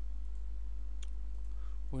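A single computer mouse click about a second in, over a steady low electrical hum.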